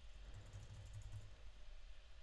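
Faint tapping of computer keyboard keys as a file name is typed, over a faint low hum.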